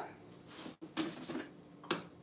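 Quiet kitchen handling noises: a few soft clicks and knocks of utensils and dishes, the sharpest one near the end.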